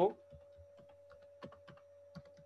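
Computer keyboard typing: faint, irregularly spaced keystrokes as words are typed.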